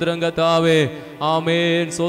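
A man chanting prayer into a microphone in long, drawn-out held syllables, with short breaks between them, over a steady low held tone.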